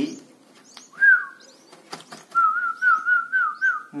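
A person whistles a short falling note, then a longer wavering, trilled whistle, while red-whiskered bulbul chicks being hand-fed give short, high cheeps, with a few light clicks.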